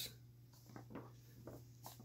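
Near silence with faint rustling of paper comic books being handled, a few soft taps and scrapes about a second in and near the end.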